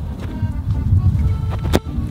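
Background music, with one sharp thud near the end: a football kicked off a kicking stand.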